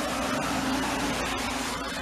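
A box truck passing close on a wet road: steady hiss of tyres on wet asphalt over a low engine hum, swelling slightly and then easing off.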